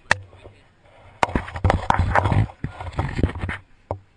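A sharp click, then about two and a half seconds of close rustling, knocking and rubbing as the climbing rope and harness are handled against the helmet-mounted camera, with a low rumble.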